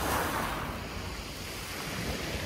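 Calm sea water washing against a concrete pier, with a breeze rumbling on the microphone. A wash of water swells in the first second, then eases off.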